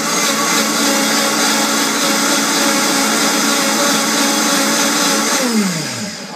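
Vitamix high-speed blender running, puréeing fresh blueberries with a loud, steady whir. Near the end the motor is switched off and winds down, its pitch falling away.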